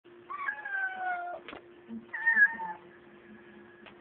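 A cat meowing twice: a long call with its pitch sagging slightly, then about a second later a shorter, wavering one.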